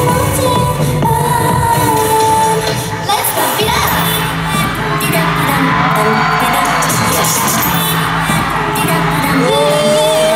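Live K-pop dance track played loud through an arena sound system, with the group's singing and the crowd cheering along, recorded from the stands. A short dip in the music comes about three seconds in, and a rising sung note near the end.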